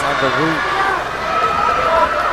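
A man's voice in the first half-second, then a steady background din from the crowd in the boxing venue.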